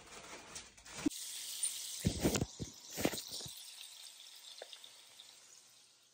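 Hot cooking oil sizzling in a pot, a steady hiss that fades toward the end, with a few knocks about two to three seconds in.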